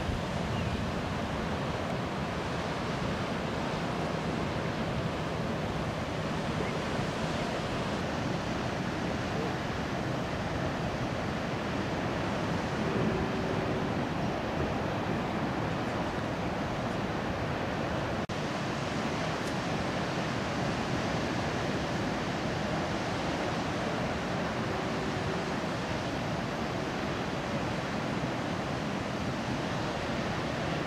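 Steady rush of heavy ocean surf breaking, mixed with wind noise on the microphone.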